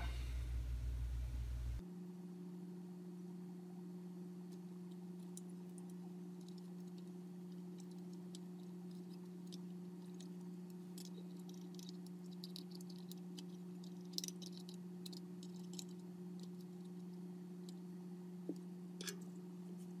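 Faint, scattered small clicks and ticks of fingers handling and bending component leads and wire on a radio's circuit board, over a steady low hum that sets in about two seconds in.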